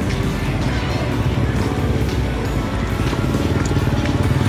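Street traffic, mostly motorbikes, running steadily, mixed with music playing.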